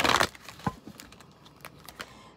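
A deck of oracle cards being shuffled by hand: a short, loud rustle of cards at the start, then a few faint clicks as the cards are handled.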